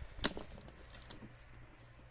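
A single sharp click about a quarter of a second in, then faint small ticks, as fingers work at the taped flap of a small cardboard box.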